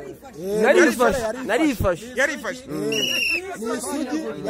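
Human voices, with strongly rising and falling pitch, not taken down as words. About three seconds in, a brief high whistle-like tone sounds over them.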